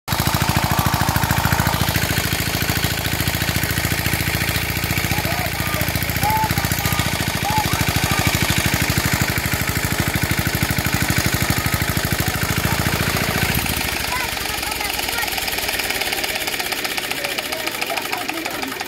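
Small engine-driven water pump running with a steady, rapid chugging as it pumps water out of a pond. The low rumble drops away about three-quarters of the way through.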